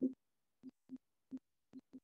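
A whiteboard marker squeaking faintly as it writes, in about six short separate strokes, each a brief low squeak.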